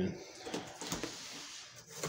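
Faint handling noise: light rustling with a few soft knocks as a cardboard shipping box is reached for and picked up.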